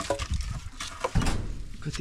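Sticks of split firewood knocking and clattering against each other as they are handled and stacked, with several separate knocks, the loudest a little over a second in.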